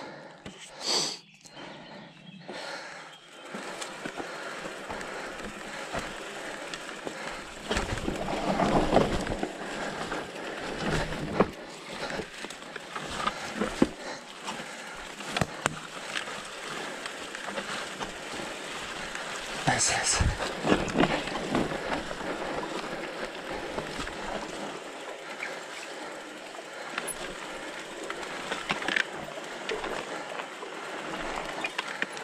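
Specialized Turbo Levo electric mountain bike riding down a rough dirt trail: steady tyre and trail noise with frequent knocks and rattles as it goes over bumps, a few louder jolts among them.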